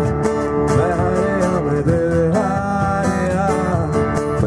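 A live acoustic band playing: a male voice sings in Hindi over strummed acoustic guitar, bass guitar and a cajon.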